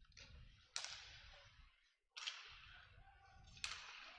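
Near silence, broken by three faint sharp knocks or clicks about a second and a half apart, each with a short ringing tail.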